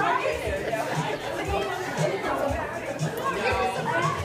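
Several people chattering at once over background music with a steady beat of about two thumps a second.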